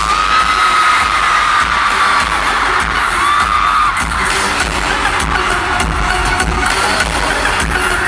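Loud live electronic pop music over a concert sound system, with a pounding bass beat, and a crowd cheering over it. A long high cry rises just after the start, and a shorter one comes a little after three seconds.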